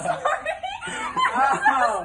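A young woman and a young man laughing and exclaiming, in short uneven chuckles and wordless voice sounds.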